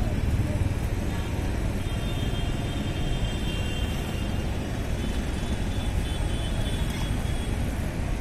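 Passenger train running away along the track, a steady low rumble with no breaks.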